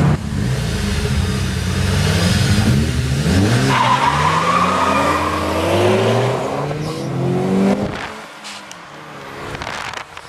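1991 Nissan Skyline GT-R accelerating hard, heard from inside the cabin. The engine climbs in pitch through a few short pulls early on, then through one long climb lasting about four seconds. About eight seconds in the revs drop and the engine goes quieter as the driver lifts off.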